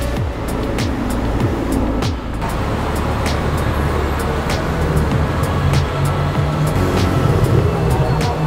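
Electronic music with a steady beat, with the sound of cars in street traffic underneath.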